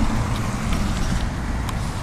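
Outdoor background noise: a steady low rumble with a few faint ticks.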